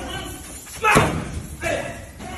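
Gloved punches landing on a wall-mounted punching bag: two heavy thuds, the first louder, under a second apart.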